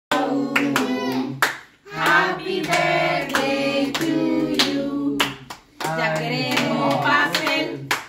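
A small group singing a birthday song together while clapping their hands, with two short breaks between lines.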